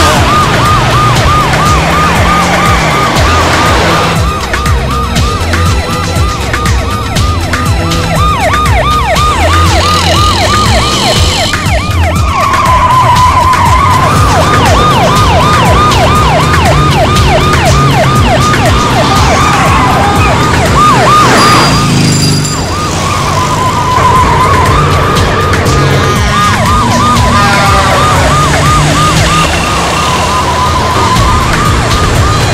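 Police vehicle siren in a fast yelp, about three rises and falls a second, settling briefly into a slower wail twice, over a low, rhythmic film score.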